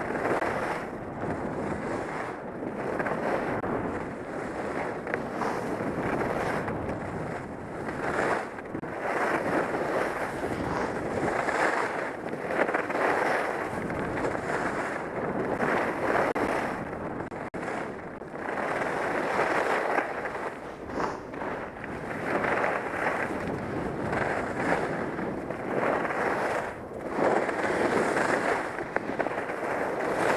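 Skis scraping and hissing over groomed snow on a downhill run: a continuous rushing sound that swells and eases with the turns, mixed with wind buffeting the helmet-mounted camera's microphone.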